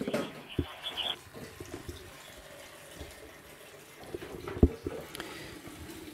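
The tail of a received digital (DMR) radio transmission plays through the computer speaker for about the first second, cut off sharply above the voice range. Low room noise follows, with a few light ticks and a single dull knock about four and a half seconds in.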